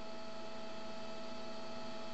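Steady electrical hum with a faint hiss, a few constant tones held unchanged throughout, with nothing else happening.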